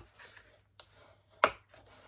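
A single sharp tap about one and a half seconds in, as a bone folder knocks against the cardstock and craft mat while being picked up, over faint paper-handling noise.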